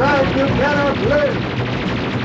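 Cartoon energy-weapon fire sound effects: a rapid gunfire-like crackle with three short tones that rise and fall in the first second and a half.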